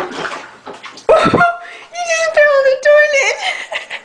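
Water splashing in a toilet bowl as a cat scrambles out of it. About a second in, a person lets out a long, high-pitched cry lasting about two seconds, louder than the splashing.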